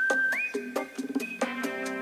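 Whistling over light background music of a plucked guitar-like instrument: one held note that slides up to a higher note about a third of a second in and is held for about a second.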